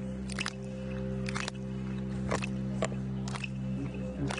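Didgeridoo playing a steady low drone, with sharp clicks struck about once a second over it.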